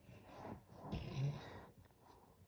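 Faint rustling and scraping of a cotton shirt brushing close against the microphone while the person handles something, with a brief low voice sound about a second in.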